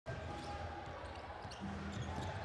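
A basketball being dribbled on a hardwood court, faint, over the low steady hum of a large, nearly empty hall, with distant players' voices.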